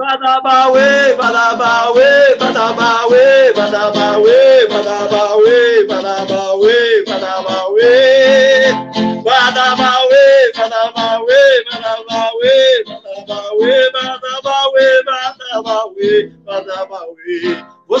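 A man singing a forró song in short, arching phrases that come about once a second, with some long, wavering held notes.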